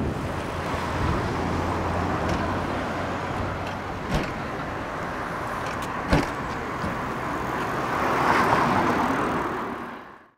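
Outdoor city traffic noise, a steady wash of passing road vehicles, with two short sharp clicks about four and six seconds in. The sound fades away at the end.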